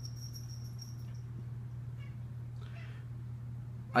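Steady low background hum, with a thin high whine that fades out about a second in and a short faint sound about three seconds in.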